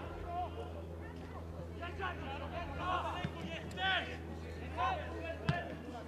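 Scattered shouts and calls of footballers on the pitch during open play, over a steady low hum, with one sharp thump of a ball being kicked near the end.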